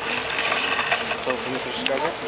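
Light metallic clinking and jingling, mostly in the first second, with a short spoken word near the end.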